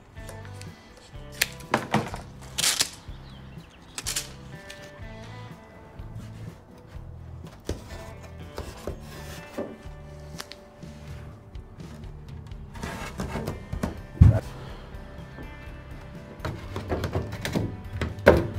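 Background music with a steady stepping bass line throughout. Over it come a few sharp snips in the first few seconds, typical of scissors cutting a Velcro strip, and a single thunk about 14 seconds in.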